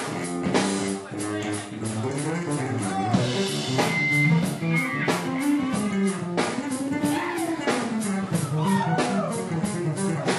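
Live funk band playing, an electric bass line to the fore over a steady drum kit beat, with some bending guitar notes above.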